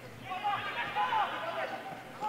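Faint, distant voices of footballers calling out on the pitch over a light background hiss.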